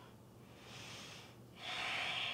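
A woman breathing audibly close to the microphone while holding a yoga pose: a soft breath about half a second in, then a louder one starting near the end.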